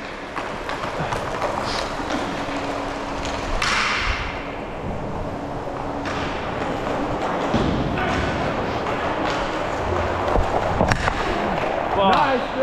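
Inline hockey play heard up close while skating: skate wheels rolling on a plastic sport-court floor, with scattered stick and puck knocks. A faint steady hum runs through the first several seconds, and a single sharp crack comes near the end.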